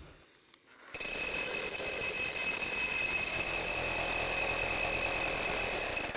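Bosch rotary hammer driving a new 5-inch carbide-tooth core bit through a concrete slab, with a dust-extraction vacuum on the drilling shroud. It starts about a second in and runs steadily with a high whine.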